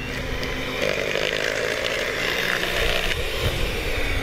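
Electric hand mixer running steadily, its whisk beaters churning muffin batter in a bowl.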